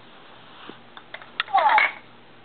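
A few light clicks of plastic baby toys being handled, then a short, loud squeal from the baby near the end.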